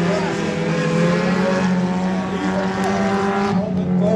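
Several dirt-track race cars' engines running together around the oval, with pitches rising and falling as the cars go through the turns.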